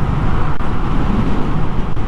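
Royal Enfield Classic 350's single-cylinder engine running steadily at highway speed, with a constant rush of wind and road noise over it.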